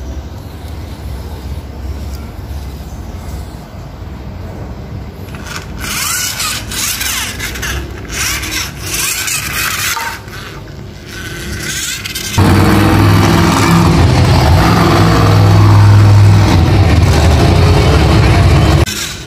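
Toy cars handled on a tiled floor, with small clicks and knocks. About twelve seconds in, a much louder monster truck engine cuts in suddenly and runs steadily to the end.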